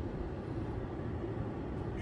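Steady low hum of a parked car's cabin with its systems switched on, with a faint steady tone under it and no engine running up.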